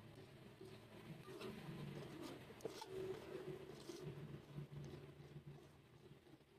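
Faint bubbling and soft irregular clicks of a thick mung bean and pork stew simmering in a pot, over a low background hum.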